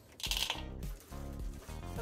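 Background music with a steady beat. About a quarter second in comes a brief rattle of white chocolate chips and peppermint bits being tipped from a bowl into cookie dough.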